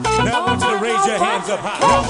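Loud house dance music played live on a single keyboard (orgen tunggal). The thumping bass beat drops out for about a second and a half, leaving high sliding melodic sounds, and comes back right at the end.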